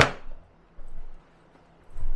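Exterior storage compartment door on a Grand Design Momentum fifth-wheel pushed shut, latching with one sharp knock, followed by a softer low bump about a second later.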